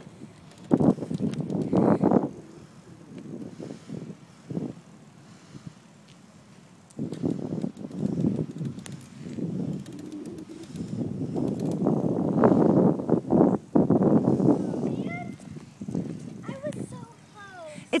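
Wind rushing over a handheld phone's microphone in uneven gusts while the filmer moves along on a bike ride: a short gust about a second in, then a longer, louder stretch from about seven seconds to near the end.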